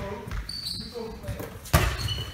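One sharp thump of a ball hitting a hard surface, about three-quarters of the way in, echoing in a large sports hall.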